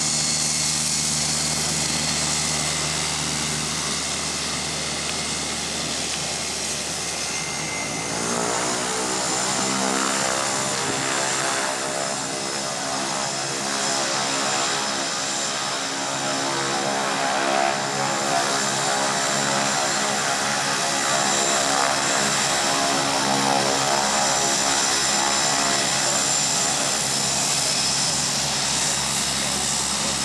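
Air Tractor agricultural spray plane's engine and propeller running steadily, then rising in pitch about eight seconds in as power comes up for the takeoff run, and holding at the higher pitch with a high whine above it.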